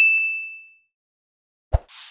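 Bright notification-bell ding sound effect, as the bell on a subscribe button is clicked, ringing out and fading over the first second. Near the end comes a short low thump as a whoosh begins.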